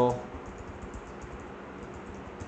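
Computer keyboard being typed on: a quiet, quick run of key clicks as a short phrase is entered. A voice finishes a word at the very start.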